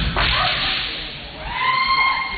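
Kendo fighters shouting kiai: a harsh, noisy shout right at the start, then a long, high, held shout from about one and a half seconds in.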